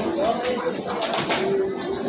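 Indistinct background voices of other people over a steady room hubbub, with no single clear event.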